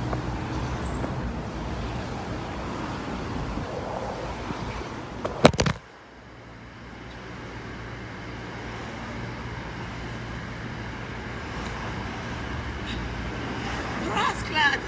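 Steady rumble of city street traffic. A little over five seconds in come a couple of sharp knocks, then the sound suddenly drops and turns duller, leaving a quieter steady low hum.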